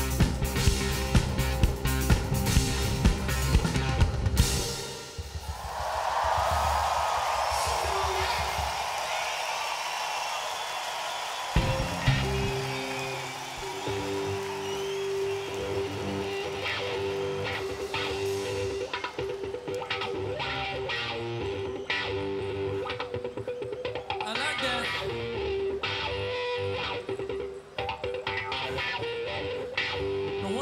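A rock band with drum kit and electric guitar plays the last few seconds of a song with a steady beat, then stops. A crowd cheers in the gap. About eleven seconds in, an electric guitar starts the next song alone with a repeated riff, and the drums join about halfway through.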